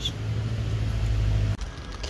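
Low, steady rumble of a motor vehicle engine running nearby, cutting off abruptly about one and a half seconds in.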